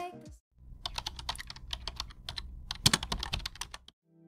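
Typing on an external computer keyboard: a quick, uneven run of key clicks, with a few harder keystrokes about three seconds in.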